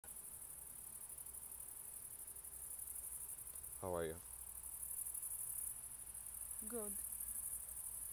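Crickets chirping in a steady high chorus, with two brief voice-like sounds falling in pitch about four and seven seconds in.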